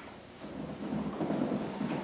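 Low rumbling and rustling of a person shifting his weight on a padded massage table as he moves to climb off it, starting about half a second in.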